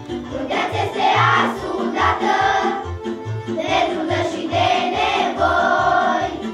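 Children's vocal group singing a song together over an accompaniment with a steady low beat.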